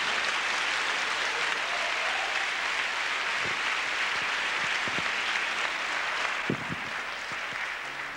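A congregation applauding, steady throughout and tapering off near the end.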